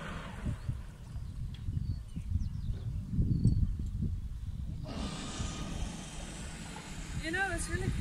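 Wind buffeting the phone's microphone in irregular low gusts, loudest around three to four seconds in, giving way to a steadier, wider hiss of wind; a voice starts near the end.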